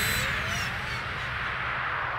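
Electronic techno music: a noisy synth wash with faint gliding tones, slowly fading, the beat weaker than just before.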